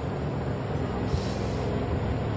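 Steady low rumble of background noise, with a brief high hiss about a second in.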